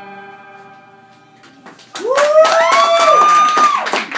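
An electric guitar's final chord ringing out and fading away. About two seconds in, the small audience breaks into clapping, with a few voices cheering over it.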